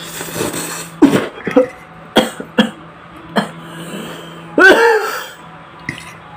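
A person slurping noodles, then coughing in a string of short, sharp coughs, ending in a louder, drawn-out voiced cough near the end.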